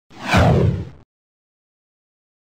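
Whoosh sound effect: a sweep falling in pitch over a deep low hit, lasting about a second.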